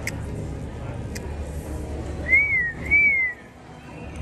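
A person whistling two short notes, each rising and then falling, a little over two seconds in and again about half a second later, over a steady low hum.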